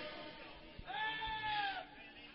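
A single faint, high-pitched held cry from a voice in the congregation, about a second long near the middle, its pitch arching up and then sliding down.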